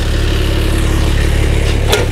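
Kubota RTV-X1100C utility vehicle's three-cylinder diesel engine idling steadily, with one short sharp click near the end.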